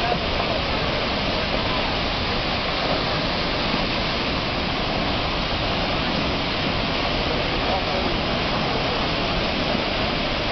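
A swollen river in flood rushing past: a steady, dense noise of churning muddy water and spray, unbroken and even in level.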